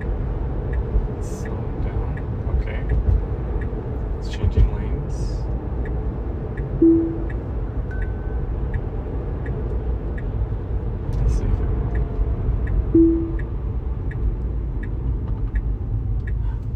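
Tesla cabin on the move, with steady low road and tyre noise and the turn signal ticking about twice a second during an automatic lane change. A short low tone sounds twice, about seven and thirteen seconds in.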